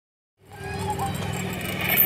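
Playground zip line trolley rolling along its steel cable, a steady low rumble that starts about half a second in and grows louder as the rider picks up speed.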